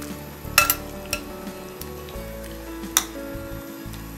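Metal tongs clinking and scraping against an enamelled cast-iron pot while stirring chicken pieces in the water, with a few sharp clicks about half a second in, at about a second, and near three seconds.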